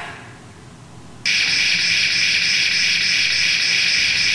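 Toy lightsaber's electronic hum, starting abruptly about a second in and then holding loud and steady on a high, buzzy pitch.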